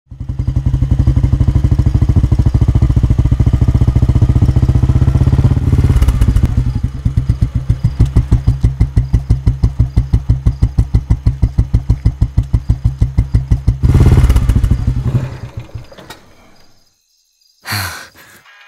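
Royal Enfield motorcycle's single-cylinder engine running, then settling to an even idle thump of about six beats a second. It swells once near the end and dies away. A short burst of noise follows just before the end.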